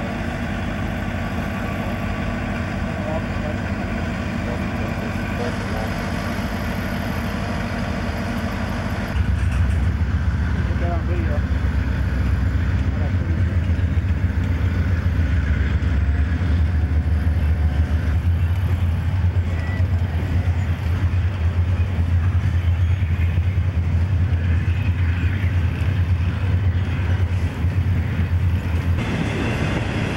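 Double-stack container train rolling past, its cars and wheels rumbling steadily. About nine seconds in, the sound turns to a louder, deeper rumble.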